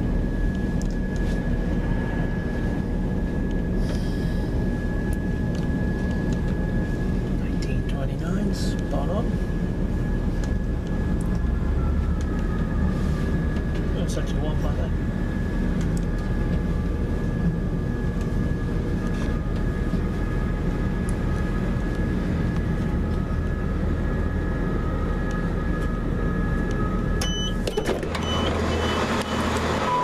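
Interior running noise of a passenger train: a steady low rumble with a high, steady whine. A second whine starts about a third of the way in and slowly rises in pitch as the train gathers speed. Near the end the sound abruptly becomes louder in the upper range and more hissy.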